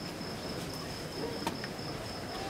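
Crickets trilling in one steady high note, with a single faint click about one and a half seconds in.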